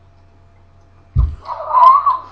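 A low thump a little past the first second, then a high, drawn-out squeal from a person, about half a second long, reacting to the burning heat of a very hot chilli nut.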